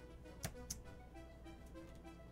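Two sharp computer-mouse clicks a quarter of a second apart, over faint background music with a soft note repeating about three times a second.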